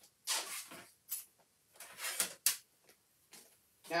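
Rustling and knocking of craft supplies being gathered and handled, in a few short bursts with a sharp click about two and a half seconds in.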